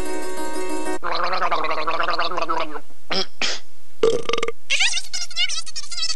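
Logo soundtrack: a held chord that cuts off about a second in, followed by warbling, voice-like sounds and a few short bursts.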